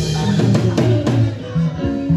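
Live house band playing a short burst of music, with drum kit, bass drum, bass notes and guitar.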